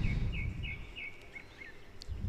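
A bird chirping in a quick series of short repeated chirps during the first second and a half, over a low rumbling noise that is loudest at the start and fades.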